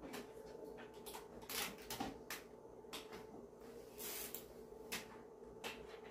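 Faint scattered clicks, taps and rustles of hands working at the back of a TV while its cables are connected, with two brief rustling hisses, over a faint steady hum.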